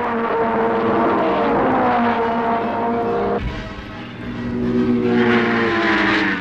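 Formula One racing car engines passing at high revs: the first pass falls steadily in pitch as the car goes by, then an abrupt cut a little past halfway, and a second pass swells louder and drops in pitch near the end.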